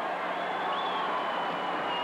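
Arena crowd noise: many voices blending into a steady din, with a faint high thin tone held through the second half.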